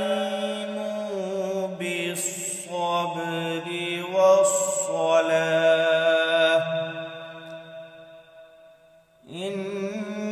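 Male qari reciting the Quran in melodic tajweed style, one voice holding long, ornamented notes. The phrase fades out toward a breath about nine seconds in, and the next phrase starts just before the end.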